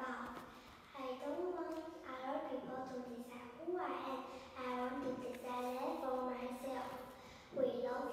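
Speech only: a young girl reciting in English into a handheld microphone, in phrases with short pauses between them.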